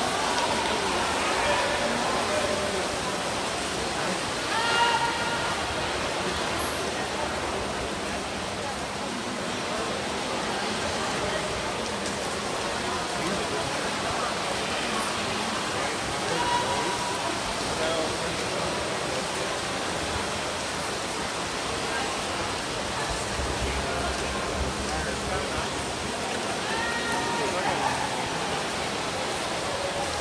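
Swim-meet crowd cheering and shouting in an echoing indoor pool hall over a steady rushing din, with a few voices calling out more loudly about five seconds in and again near the end.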